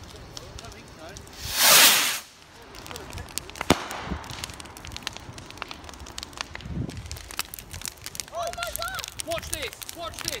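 Bonfire crackling, with one loud rushing burst of under a second about two seconds in and a single sharp crack a couple of seconds later. Voices call out near the end.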